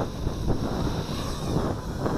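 Wind buffeting the microphone, over the faint, steady high whine of a small FPV racing quadcopter's brushless motors spinning at idle on the ground.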